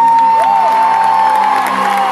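A concert crowd cheering and applauding over sustained live music, with a long high call that rises and is held through most of it.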